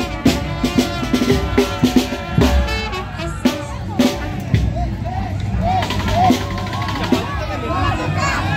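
Street band music with a hand-carried drum beating sharp strokes under sustained melody notes; about halfway through, the melody drops back and crowd voices rise over the drumming.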